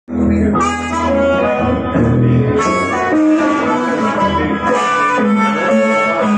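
Live harmonica and electric guitar duo: an amplified harmonica plays long held notes over the guitar's low accompaniment.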